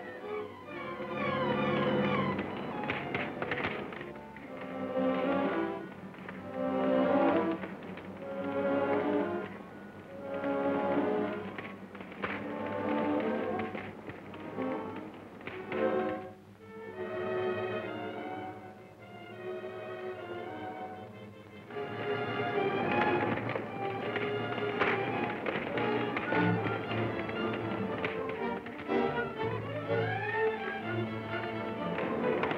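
Orchestral film-score music: phrases that swell and fade about every two seconds over a tapping beat, growing fuller and steadier about two-thirds of the way in.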